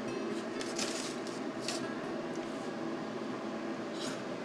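A few faint, brief clicks and rustles of a fork picking at an aluminium foil packet of broiled fish, over a steady low room hum.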